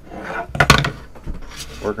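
A plastic snap-together beehive frame being handled and popped apart: a brief rub, then two sharp plastic clicks about a second apart, the first the louder.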